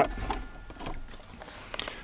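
Pause between words, with faint outdoor background: a low wind rumble on the microphone for the first half-second, then a faint steady hiss.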